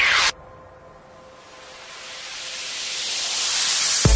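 Electronic dance music transition: a rising sweep cuts off suddenly just after the start, then a white-noise riser hisses, swelling steadily louder and building toward the beat that comes back in at the end.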